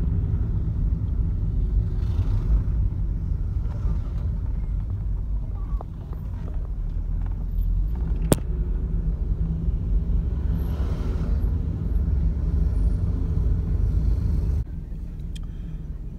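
Steady low rumble of a car driving, heard from inside the cabin, with one sharp click about eight seconds in. The rumble drops noticeably in loudness near the end.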